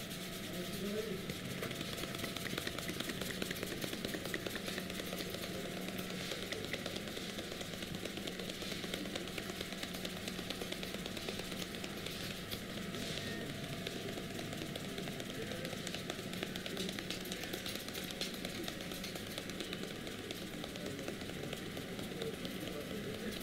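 Fingertips rubbing and scratching through hair and scalp during a head massage: a continuous fine crackling rustle over a low steady hum.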